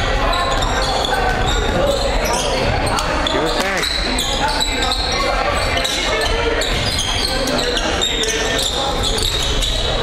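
Basketball game in a gym: a ball bouncing on the hardwood court amid the hall-echoing chatter of spectators and players.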